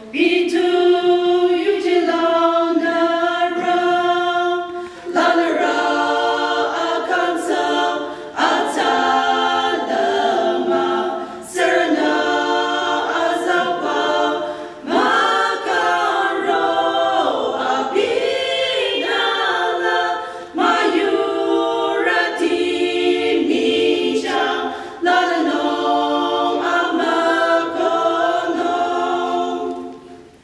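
A small group of women singing together unaccompanied, a cappella. The song runs in phrases broken by short pauses for breath every few seconds.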